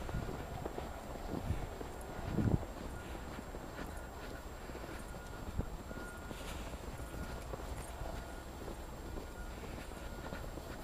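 Footsteps crunching through deep snow, irregular and uneven, over a low steady rumble.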